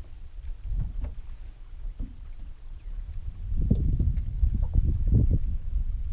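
Wind rumbling on the microphone and water slapping against a small aluminium boat hull, getting louder about halfway through, with a few faint clicks.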